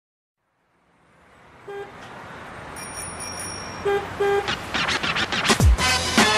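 About a second of silence between tracks, then street traffic noise fading in with a few short car-horn toots, as the recorded intro of a pop song. A deep kick-drum beat enters about five and a half seconds in.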